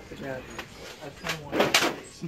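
Quiet talking in the background, with a brief clatter near the end.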